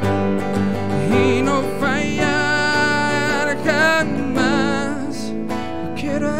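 A man singing a slow worship song with vibrato, accompanying himself on a strummed electric guitar.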